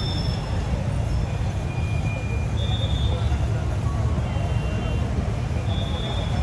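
Busy street and crowd ambience: a steady low rumble of traffic and motorcycles under the indistinct chatter of many people, with a few faint short high tones.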